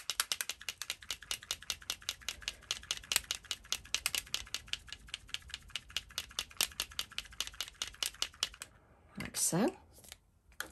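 Rapid, even tapping, about seven taps a second, that stops shortly before the end: a paint-loaded tool tapped to flick white paint splatters onto a card. A brief vocal sound follows near the end.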